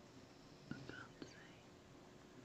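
Near silence, with a faint brief whisper and a few soft clicks about a second in.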